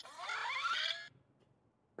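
The motorized faceplate of an Iron Man Mark L helmet opening on voice command: its servo motors whine in short rising glides for about a second, then stop.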